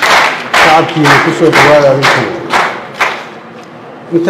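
A man's voice speaking into a microphone, loud and amplified, with a pause near the end.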